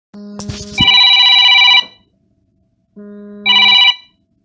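Electronic telephone ringtone ringing twice, each ring a lower buzzing tone followed by a bright multi-note chord, the second ring shorter than the first. A couple of sharp clicks come in the first second.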